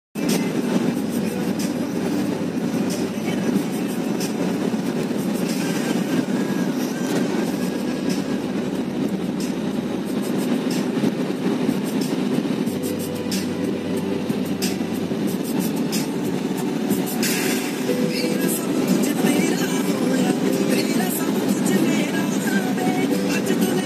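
Steady road and engine rumble inside the cabin of a car cruising along a highway, an even low noise without pauses.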